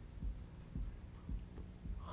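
A marker tapping tick marks onto a graph's axis: four soft, low taps about half a second apart, over a faint steady electrical hum.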